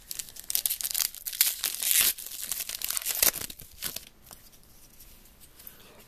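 A 2013 Score football card pack's shiny plastic wrapper being torn open and crinkled by hand, in a run of crackling rips for about four seconds.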